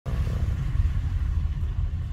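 A car's low, steady rumble heard from inside its cabin, from the engine and the road.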